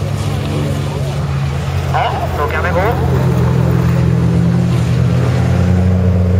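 Folkrace cars' engines running as the cars go round the track, a steady drone that climbs a little in pitch and gets slightly louder in the second half.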